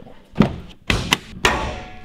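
About four separate clunks and knocks, the last trailing off, from the Tacoma's hood being unlatched and lifted open.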